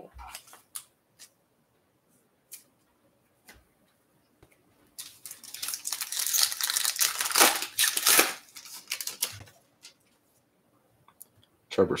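A few light taps, then the foil wrapper of a 2022 Topps Chrome Update trading-card pack crinkling and tearing as it is ripped open, for about four seconds starting about five seconds in.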